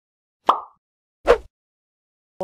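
Two short pop sound effects about a second apart, each sharp at the start and dying away quickly, with silence between them.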